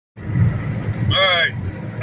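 Steady low drone of a semi truck's engine and road noise heard from inside the cab while driving on the highway. A man's voice speaks briefly about a second in.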